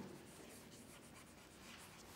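Faint scratching of chalk on a blackboard as a word is written by hand.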